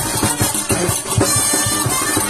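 Festive carnival music with a fast, steady drum beat under a reedy melody.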